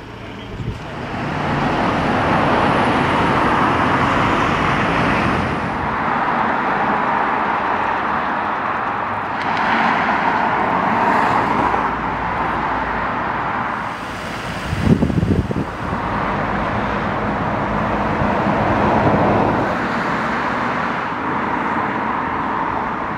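Road traffic going by: a continuous wash of tyre and engine noise that rises and falls as vehicles pass, with a brief low rumble about fifteen seconds in.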